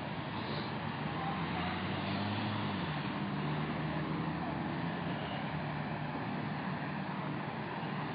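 A motor vehicle engine running steadily over a haze of street traffic, its pitch wavering briefly a couple of seconds in.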